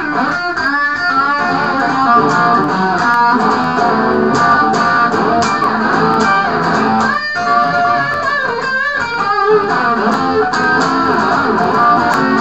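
Telecaster-style electric guitar played with a pick: a busy run of picked single notes mixed with chords, with brief breaks about seven and nine seconds in.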